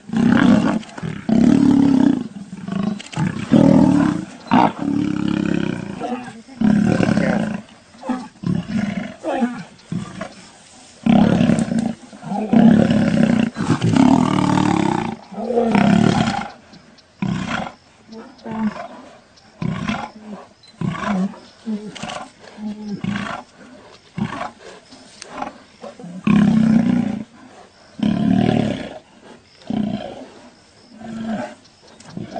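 Lions growling in a fight, in repeated loud bursts of one to two seconds, as several lions attack a male lion on the ground.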